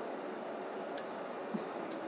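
Quiet steady background hiss with a sharp click about a second in and a fainter click near the end, as oil is poured from a small bowl into a nonstick kadai.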